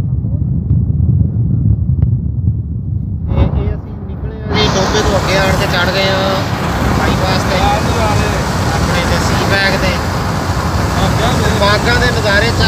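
Low steady rumble of a car travelling at motorway speed. About four seconds in, the road noise turns louder and brighter, with voices over it.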